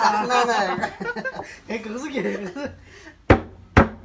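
Young men laughing and chattering, then two sharp smacks about half a second apart near the end: a plastic bottle swatted down on the losing player's head.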